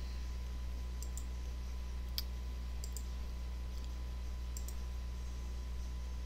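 Computer mouse clicking several times, mostly in quick pairs of press and release, over a steady low electrical hum.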